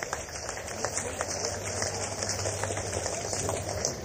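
Scattered audience handclaps, about two or three a second, with low crowd noise as the song ends, heard on an old live cassette recording with a steady tape hiss.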